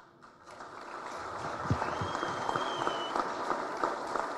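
Audience applause, the clapping swelling in over the first second and then holding steady. A high whistle sounds over it for about a second in the middle.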